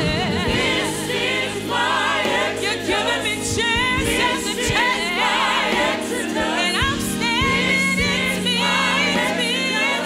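A gospel praise team of several voices singing together, with wavering vibrato on held notes, over steady keyboard accompaniment.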